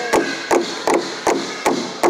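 Large rawhide-headed powwow drum struck in unison by several drummers with padded sticks: a steady, even beat of six strokes.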